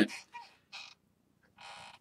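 A pause in a man's talk: a couple of faint mouth sounds, then a soft breath drawn in during the last half second before he speaks again.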